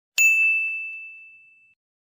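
A single bright ding, struck once and ringing out on one clear tone, fading away over about a second and a half.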